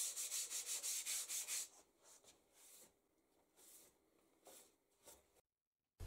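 Hand sanding of an MDF board edge with a sanding block: quick back-and-forth rubbing strokes, about four a second, smoothing the wood filler on the edges. The strokes stop about a second and a half in, and near silence follows.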